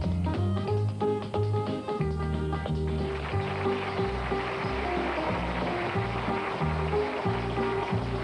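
Upbeat band music with a steady bass line, and tap shoes clicking on a stage floor as three dancers tap-dance to it.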